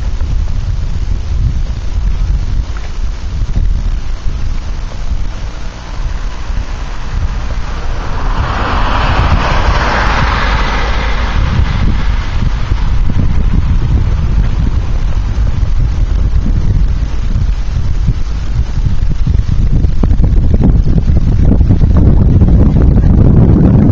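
Wind buffeting the camera microphone: a loud, uneven low rumble that grows stronger towards the end. About eight seconds in, a broader hiss swells up and fades away again over some five seconds.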